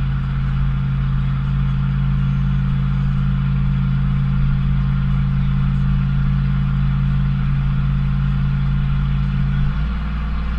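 Ford 460 big-block V8 (7.5 litre) running steadily under the load of towing about 9,000 lb, heard from inside the truck's cab as a steady low drone. Its note changes just before the end.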